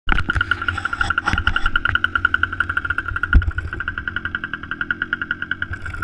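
Small engine of a motorised Stiga Snow Racer sled idling with a rapid, even putter after a carburettor clean and new fuel line. A thump about halfway through.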